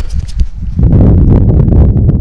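Wind and handling noise on the camera microphone: a loud low rumble that swells about a second in, with scattered small clicks and rustles.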